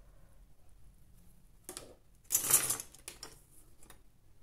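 Light handling noise at a craft work table: a few small clicks and, about two and a half seconds in, a brief rustling scrape as a modelling brush is put down and small cold-porcelain clay pieces are picked up.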